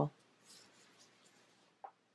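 Faint rustling of a hand on planner paper and stickers, with one small tick near the end.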